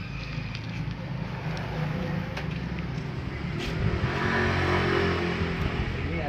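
A motor vehicle engine running steadily, swelling louder around four to five seconds in before easing off.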